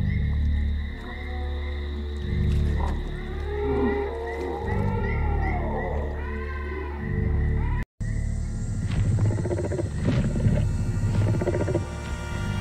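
Film soundtrack of a low, sustained music drone with sound-designed prehistoric animal calls over it: a series of rising-and-falling wavering cries in the middle. After a brief break about eight seconds in, rougher, noisier animal sounds with a few short knocks.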